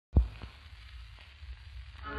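A thump just after the start, then the hiss and crackle of a 78 rpm shellac record's lead-in groove, with a few faint clicks and a low rumble.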